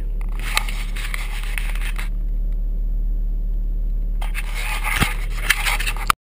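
1984 Toyota SR5 pickup's engine idling steadily, heard from inside the cab. Scraping and a few sharp clicks of the camera being handled come near the start and again in the last couple of seconds.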